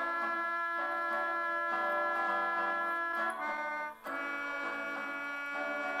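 Background music of long held chords on a keyboard or reed instrument, changing every second or two, with a brief drop about four seconds in.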